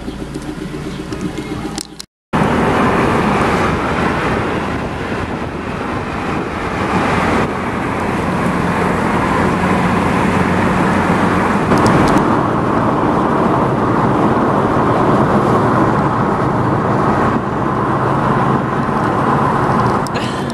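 Car interior noise: a quieter steady hum for about two seconds, a brief cut to silence, then loud steady road and engine noise of the car being driven.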